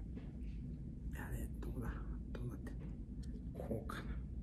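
Quiet muttering under the breath, with soft rustles and small clicks as a strip of film negatives is handled and fitted into a plastic film holder.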